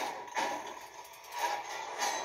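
A movie trailer's soundtrack playing from a TV speaker and picked up in the room: music with two sharp hits, about half a second in and again near a second and a half.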